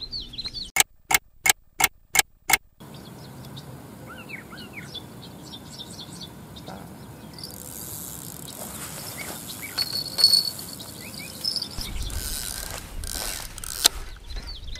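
Six sharp clicks in quick succession in the first few seconds, then birds chirping over steady outdoor background noise, with a high hiss joining at about the halfway point and a burst of rustling noise near the end.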